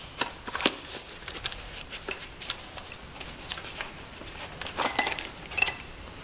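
Small cardboard parts box being opened and handled, with light rustling and scattered small clicks. Near the end, two brief metallic clinks as a steel intake valve comes out of its box.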